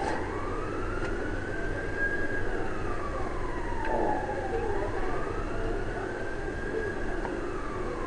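A siren wailing, its pitch rising and falling slowly about once every five seconds.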